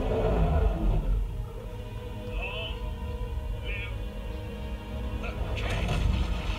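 Dark, tense film-score music of sustained notes over a deep, steady low rumble, with a few brief higher sounds about two and a half and three and a half seconds in.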